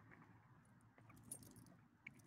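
Faint metal jingling of a dog's collar tags and leash clip as the dog moves, with a few small clinks a little past the middle.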